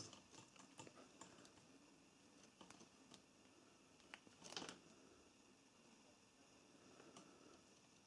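Near silence, broken by a few faint clicks and taps of multimeter test probes and wires being handled at the back of a stator wiring connector, with a slightly longer faint rustle about four and a half seconds in.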